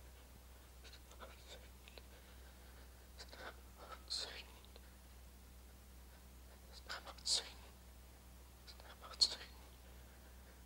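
Faint whispering or muttering under the breath by a man, in a few short hissy bursts about four, seven and nine seconds in, over a low steady hum.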